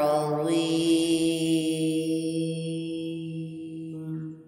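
A male Quran reciter's voice holding one long, steady chanted note that slowly fades. It is the drawn-out final syllable of the closing formula 'Sadaqallahul Azim' that ends a recitation.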